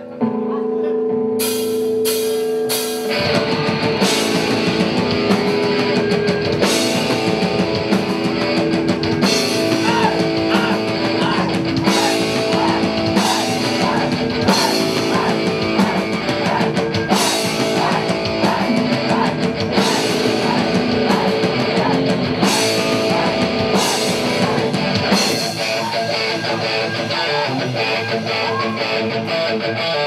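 Live rock band playing an instrumental opening: held guitar chords and a few cymbal crashes, then the full band of electric guitars, bass and drum kit comes in about three seconds in with a steady beat. The low end thins out near the end.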